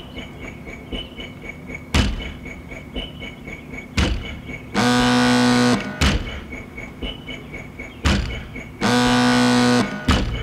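Jeep Cherokee sounds played as a slow techno beat: a door slams shut every two seconds, with faint high ticks between the slams. A car horn sounds for about a second twice, near the middle and near the end.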